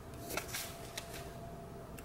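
Faint rustling of paper sticker sheets being handled, with a couple of light ticks as the sheets and fingers touch the planner page.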